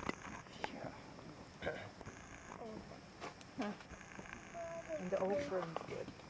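A wood fire crackling softly, with scattered small clicks and pops. Faint, brief voice-like sounds come and go in the background.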